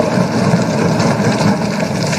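Assembly members applauding by thumping their desks: a dense, steady patter of many quick strokes.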